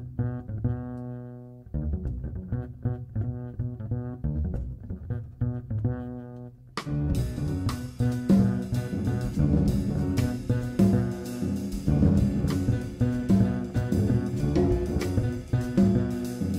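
Plucked upright double bass playing a solo jazz line; at about seven seconds in, drum kit cymbals and piano come in and the rhythm section plays together.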